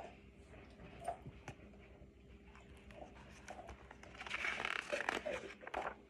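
A few light clicks of a book being handled, then a rustle of paper about four seconds in as a picture-book page is turned.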